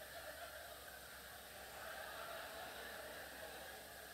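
Faint audience laughter and murmuring, low and distant, following the punchline of a joke.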